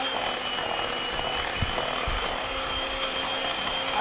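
Electric hand mixer running steadily, its beaters whirring through a creamed butter-and-sugar cake batter in a glass bowl as eggs are beaten in one at a time. The motor gives a steady high whine, with a couple of light knocks of the beaters against the bowl.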